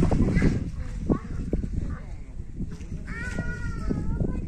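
Children's voices out in the open over a steady low rumble. About three seconds in comes one drawn-out, high-pitched call lasting about a second.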